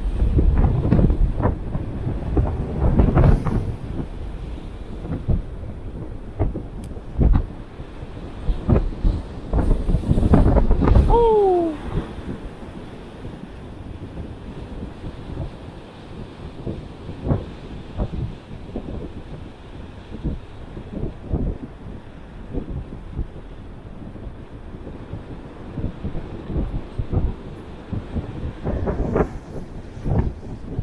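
Strong wind buffeting the camera's microphone over the rush of rough surf breaking on rocks; the gusts are heavy for the first dozen seconds, then ease to a steadier rushing. A short falling tone sounds briefly about eleven seconds in.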